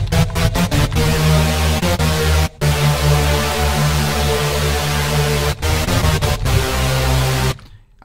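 Serum software-synth saw-wave chords in a future bass style, thickened by hyper/dimension unison and reverb and cut by a narrow notch EQ. A few short chord stabs, then long held chords broken by brief gaps about two and a half and five and a half seconds in, stopping just before the end.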